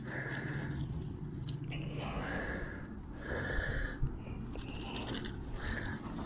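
A man breathing close to the microphone: a few soft breaths in and out, about one a second.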